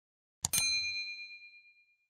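A mouse click followed by a single bright bell ding, the notification-bell sound effect of a subscribe animation, ringing out and fading over about a second and a half.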